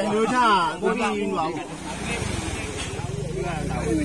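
A man's voice, then about halfway in a boat engine comes up and runs steadily with a low, even drone.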